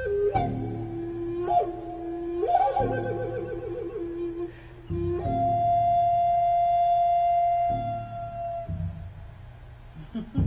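Native American-style flute playing a slow melody over a drum rhythm track. It holds low notes, warbles in a quick trill about three seconds in, then sustains one long high note that fades out around eight seconds. Low drum beats continue underneath.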